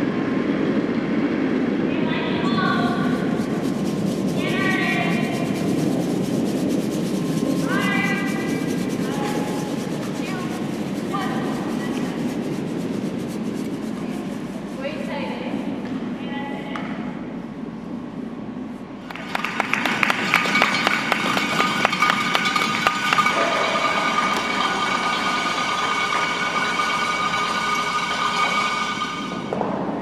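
Curling stone rumbling down the ice while brooms sweep, with players' short sweeping calls shouted about five times. About two-thirds of the way through, a loud burst of cheering and clapping with sustained high-pitched cheers breaks out and carries on until near the end.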